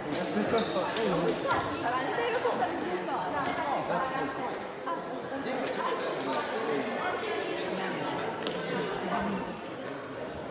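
Several people talking at once in a large sports hall, with a few short sharp knocks among the voices.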